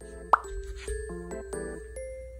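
A short rising 'plop' sound effect about a third of a second in, over background music of held notes.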